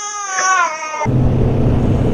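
An infant crying in one long, wavering wail that falls in pitch and breaks off about a second in. A Kawasaki Z800 motorcycle follows, riding in traffic with a steady low engine drone and wind noise.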